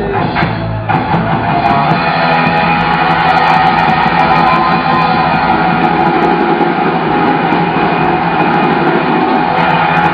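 Rock band playing an instrumental passage between verses, electric guitar over bass and drums.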